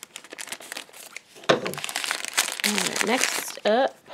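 Thin black plastic blind-bag wrapper crinkling as it is cut with scissors and torn open to free a vinyl mini figure. Near the end a wordless voice rises and falls in pitch.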